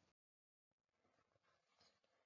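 Near silence: a pause in the recording with only a faint noise floor, dropping to complete digital silence for about half a second near the start.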